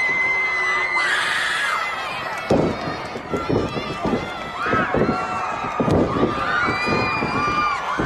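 Pro wrestling arena crowd shouting and cheering, with many high-pitched voices calling out in long held yells. From about two and a half seconds in, a run of sharp thuds comes from the ring as the wrestlers grapple and go down to the mat.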